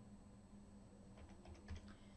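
Faint keystrokes on a computer keyboard, a quick run of several clicks in the second half as digits are typed, over a low steady hum.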